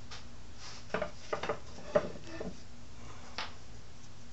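A few light clicks and taps of small screws being picked up and handled on a wooden workbench, over a faint steady hum.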